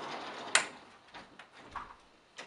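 Bi-fold door panels running along their track, then a sharp clack about half a second in as they close against the frame. A few lighter clicks follow from the handle and lock.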